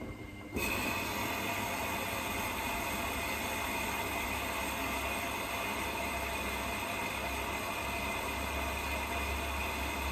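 Zanussi compact washing machine starting its drum about half a second in after a pause, then tumbling steadily through the wash. Motor whine and low hum mix with water and suds sloshing in the drum.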